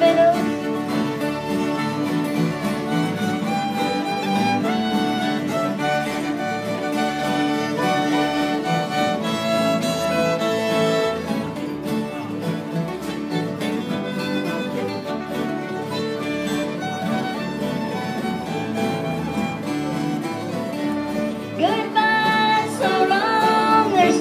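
Instrumental break of a country song: several fiddles play the melody together over strummed acoustic guitars.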